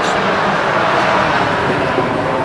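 A vehicle going by on the street, a rush of tyre and engine noise that swells about halfway through and then eases off.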